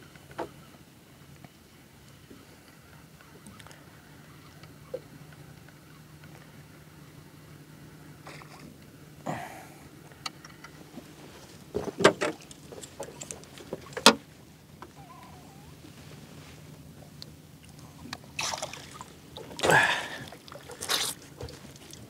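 A few sharp knocks on the small boat as the landing net is taken up, then water splashing and streaming off the landing net as a squid (southern calamari) is scooped out of the sea and lifted aboard near the end.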